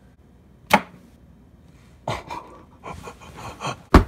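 A sharp knock about two-thirds of a second in, then scuffing and rustling, then a louder, sharper knock at the very end.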